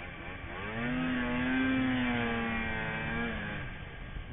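Snowmobile engine revving up about half a second in, holding a high steady note through the middle, then easing off near the end.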